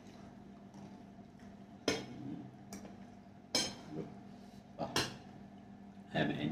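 Metal spoon clinking against steel dishes during a meal: three sharp clinks a second or two apart, with a weaker one between the first two.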